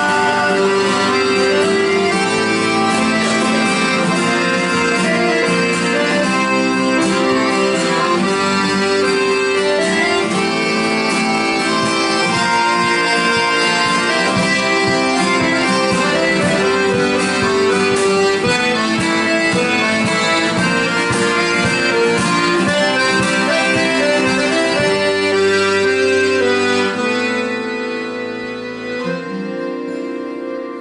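Piano accordion and acoustic guitar playing an instrumental passage of a folk song, the accordion carrying sustained chords and melody; the music gets quieter near the end.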